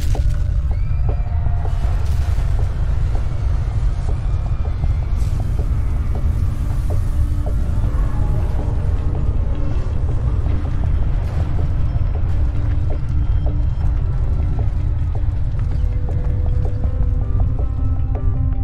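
Sinking-ship sound effects: a steady low rumble with scattered metal creaks from the hull as the stern goes under, over background music.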